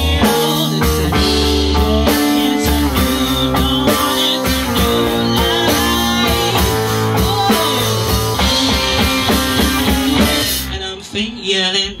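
Live rock band playing loudly: electric guitar, bass and drum kit. The band briefly drops away near the end, just before the singer comes back in.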